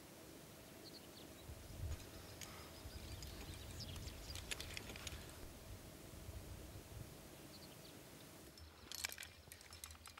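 Quiet outdoor ambience with a low wind rumble and a few faint, scattered metallic clinks of climbing gear.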